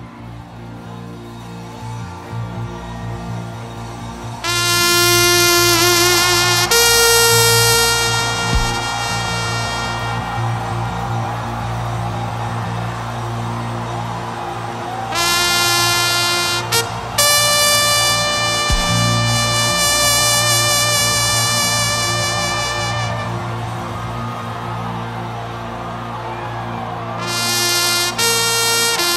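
Trumpet blasts sounded as alarm calls over a steady low backing pad. There are two long calls, each a short lower note stepping up to a higher note held for several seconds, about five seconds in and again about fifteen seconds in. A third call begins near the end.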